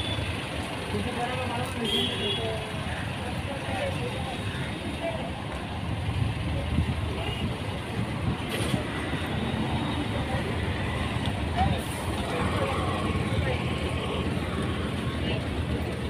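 Busy street ambience beside idling city buses: a steady rumble of bus engines and road traffic, with scattered background voices.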